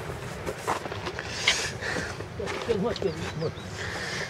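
A faint voice speaking in the background over low, steady noise; no close speech.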